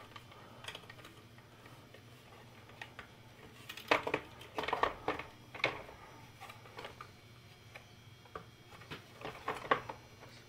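Light plastic clicks and knocks from the drawer and disc platter of a Sony CD changer being handled and fitted back into the unit, with its motor connector plugged back into the board. The sharpest clicks come in a cluster about four to six seconds in.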